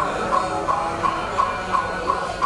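Wooden fish (mõ) struck at an even pace of about three beats a second, the steady beat that keeps time for Buddhist funeral chanting.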